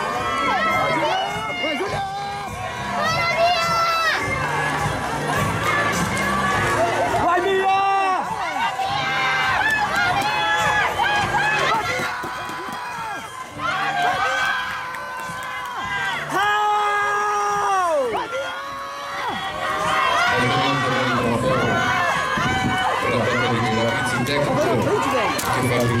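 Crowd of spectators and teammates shouting and cheering swimmers on in a race. Many overlapping voices with long drawn-out calls that rise and fall, the longest a bit past the middle.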